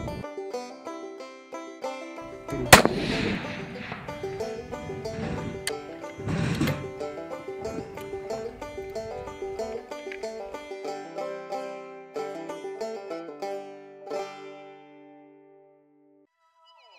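Background music with a single sharp rifle shot about three seconds in and a second, duller bang a few seconds later; the music fades out near the end.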